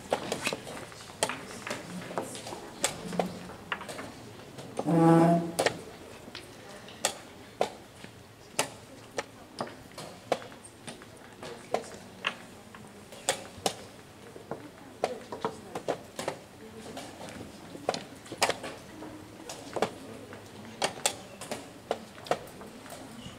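Irregular sharp clicks and knocks of wooden chess pieces being set down and chess-clock buttons being pressed at nearby boards, sometimes a few in quick succession. About five seconds in, a brief voice sound stands out as the loudest thing.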